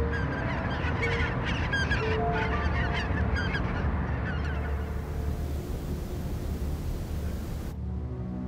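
Gulls crying in a flurry of short calls over a steady rush of seaside background noise. The cries thin out about halfway through, and the background cuts off suddenly near the end.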